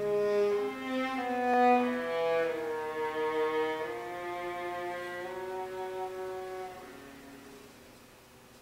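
String quartet of two violins, viola and cello playing slow, held bowed notes in overlapping voices, dying away to a very soft close near the end.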